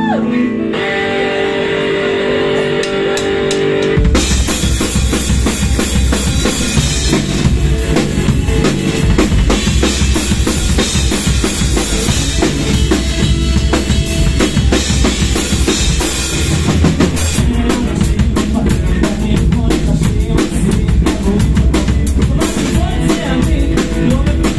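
Live rock band: held electric guitar notes ring for about four seconds with a few light cymbal taps, then drums, bass guitar and electric guitar come in together at full volume and play on with a steady drum beat.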